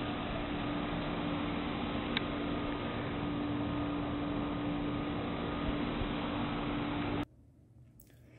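Outdoor ambience recorded at low fidelity by the Kodak EasyShare Z760's built-in microphone: a steady hiss with a constant low hum and one short high chirp about two seconds in. It cuts off suddenly about seven seconds in, leaving near silence.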